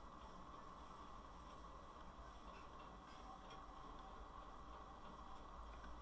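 Near silence: faint room hum with soft, scattered ticks of a stylus writing on a tablet.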